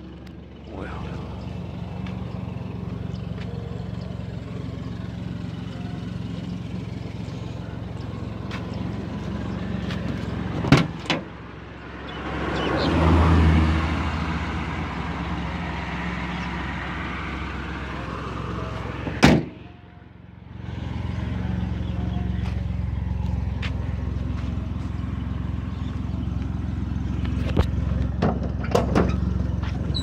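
Van ambulance's engine running steadily with road noise, heard from inside the cab, with a louder rush around the middle. Two sharp knocks come about a third and two-thirds of the way in, and the sound drops away briefly before the engine hum returns.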